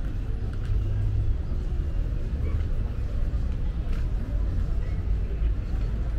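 Outdoor street and market ambience: a steady low rumble with faint, indistinct voices of people nearby.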